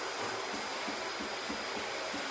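Steady low room noise with a faint, steady high-pitched whine and a few soft, faint ticks; no distinct event.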